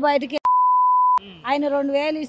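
A censor bleep: a single steady, high-pitched beep about three quarters of a second long that replaces a word in a woman's speech, starting about half a second in, with her talking before and after it.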